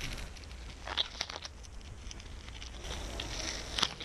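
Masking tape being peeled slowly off a spray-painted acrylic sheet, the tape crinkling faintly, with sharper crackles about a second in and again near the end.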